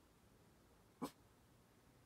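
Near silence, broken about a second in by one brief, short call from a household pet.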